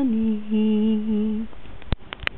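A woman humming a lullaby in a few long, low held notes that stop about a second and a half in, followed by a single sharp click near the end.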